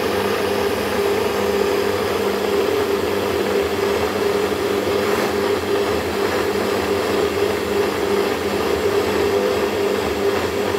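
Small cup blender's motor running steadily, blending soaked purple sea moss into a thick gel.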